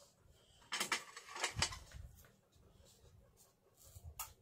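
Quiet handling sounds of craft tools on a tabletop: a few light clicks and knocks, clustered about one second and about one and a half seconds in, as a small glue bottle is set down and scissors are picked up.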